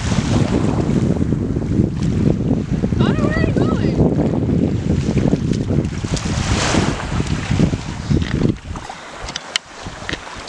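Wind buffeting the microphone at the shoreline, a loud, steady low rumble over the sound of small waves washing on the beach. A voice is heard briefly about three seconds in. The wind drops off sharply near the end.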